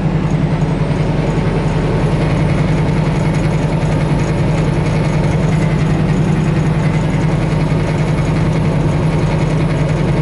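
Semi truck's diesel engine and road noise inside the cab while cruising on the highway: a steady, unbroken low drone.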